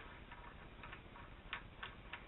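A few faint clicks of metal as the azimuth adjustment bolts are handled and turned in the base of a Skywatcher EQ8 equatorial mount, the clearest about a second and a half in.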